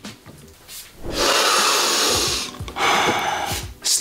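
Two long hisses of rushing air close to the microphone, the first about a second and a half long and the second just under a second.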